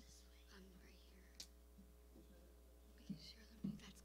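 Near silence: faint, low voices whispering and murmuring over a steady low hum, with a single click about one and a half seconds in and a spoken word near the end.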